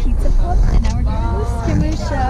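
Steady low engine and road rumble inside a moving coach bus, under passengers' voices.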